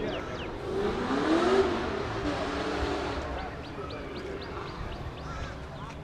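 A car engine revving, its pitch rising about a second in, then running on under a steady background of noise.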